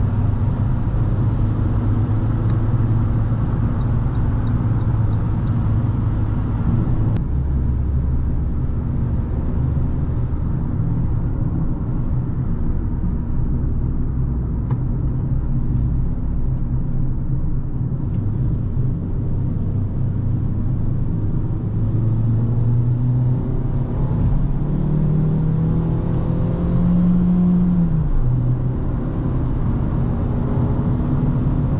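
Fiat 500's engine and tyre noise heard inside the cabin while driving at speed. The sound changes abruptly about seven seconds in, and later the engine note climbs for a few seconds as the car accelerates, then drops abruptly with an upshift.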